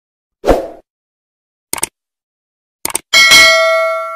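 Subscribe-animation sound effects: a short thump, then two quick double clicks, then a bell ding that rings on in several clear tones and fades out.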